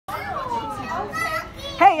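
Children's high voices chattering and calling out, with a woman's loud "Hey" near the end.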